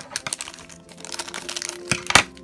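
Yellow plastic blind-bag wrappers crinkling as a hand rummages through them and picks up a sealed bag: a rapid, irregular run of crackles, loudest near the end.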